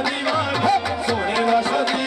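Live qawwali: harmoniums and tabla playing a steady rhythm under a sung melody.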